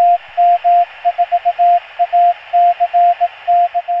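Morse code in a steady tone of about 700 Hz, keyed in dashes and dots that spell the callsign KM4ACK (-.- -- ....- .- -.-. -.-), over a steady hiss.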